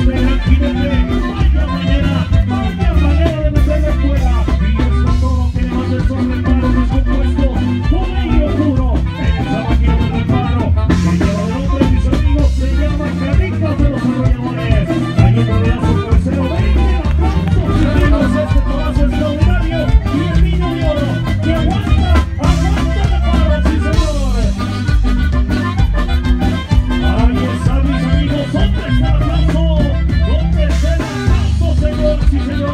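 Live band playing Mexican regional music, a lively huapango, loud with a heavy steady bass.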